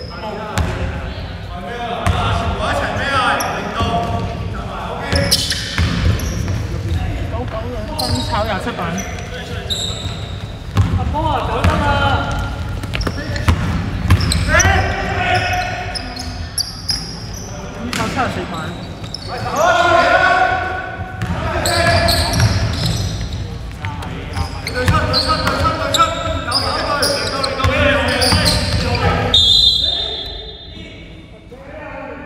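Basketball bouncing on a hardwood court amid players' voices calling out in a large gym, during live game play. A referee's whistle sounds near the end.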